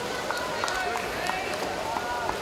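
Indoor swimming-pool race ambience: a steady, echoing wash of swimmers' splashing and hall noise, with distant voices audible over it.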